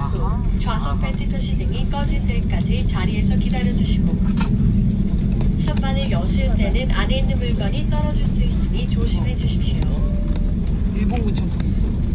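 Steady low rumble inside the cabin of an Airbus A330 rolling on the ground after landing, from its engines and the rolling of the aircraft, with talking over it.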